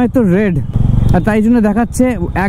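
A man talking over a Bajaj Dominar 400 motorcycle engine running at low speed in slow traffic. The engine is heard on its own for a moment about three-quarters of a second in.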